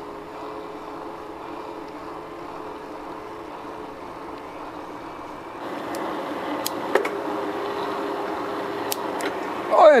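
Riding noise from an e-bike rolling along an asphalt lane: a steady motor hum over tyre and wind rush. It gets louder about six seconds in, and a few light clicks follow.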